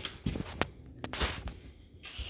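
Footsteps on the hard floor of a travel trailer: a few short taps and scuffs, with a longer scraping scuff just past the middle.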